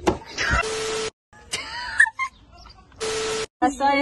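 Two short bursts of static hiss, each with a steady low tone in it and about half a second long, cut in hard between clips as a glitch transition effect. Brief snatches of voices come between them.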